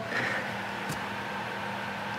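Steady background noise in a small room: an even hiss with a faint low hum, and one faint tick about a second in.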